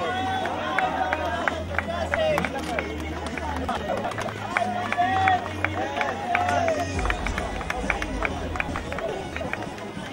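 Outdoor crowd of spectators talking and calling out over one another, with frequent short sharp taps and a steady low hum underneath.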